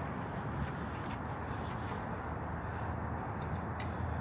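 Steady outdoor background noise with a low rumble and a few faint short ticks.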